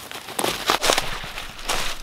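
Footsteps crunching through dry fallen leaves as a walker comes up close, in irregular crunches. Near the end comes the handling noise of the camera being picked up.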